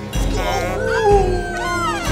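Trailer soundtrack with a long, wavering whine gliding up and down over it, and two deep bass hits, one near the start and one about a second in.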